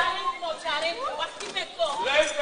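Speech only: actors' voices talking on stage.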